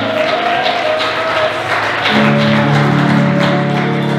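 Live worship band playing an instrumental passage between sung lines: sustained chords over a steady beat, with the bass moving to a new chord about halfway through.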